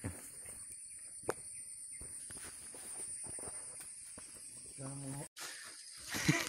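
Footsteps and rustling through brush and undergrowth, heard as scattered faint crackles and snaps over a steady high hiss. A person's short voiced sound comes near the end, just before the sound cuts out abruptly.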